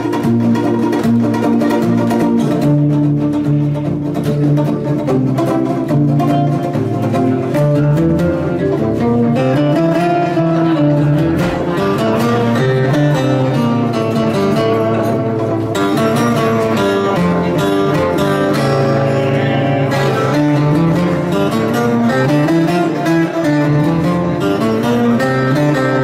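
Twelve-string acoustic guitar played live, picking an instrumental melody over a bass line that moves up and down.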